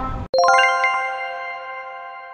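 The earlier sound cuts off abruptly just after the start. A quick run of bright, bell-like chime notes follows and rings on together, slowly fading: an electronic outro jingle.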